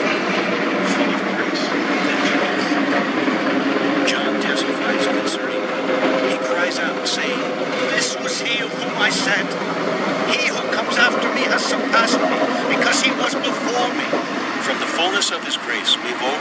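A crawler bulldozer's diesel engine running steadily, with many sharp clicks and clanks over it, as the machine moves across the sand. A recorded male voice reading Bible verses runs faintly underneath.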